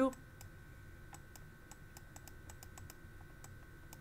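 Light, irregular clicking, roughly four clicks a second, from the computer input device used to handwrite equations on screen. A faint steady high whine runs underneath.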